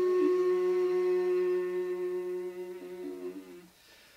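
A long held note of shakuhachi and voice together: a steady shakuhachi tone above a low sustained sung or hummed vocal tone, both dying away about three and a half seconds in.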